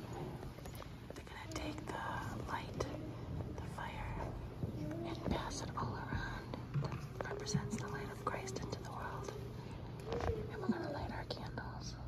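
Hushed whispering and low murmuring of a church congregation standing in the pews, with scattered faint clicks and rustles.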